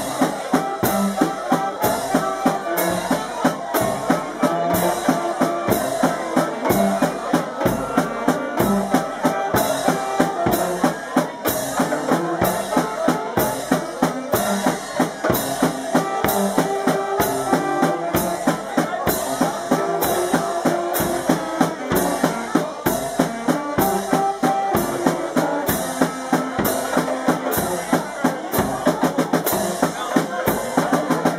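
Brass-and-drum band playing a lively tune: snare drum and bass drum keep a steady, brisk beat with cymbals, while saxophones and trumpets carry the melody.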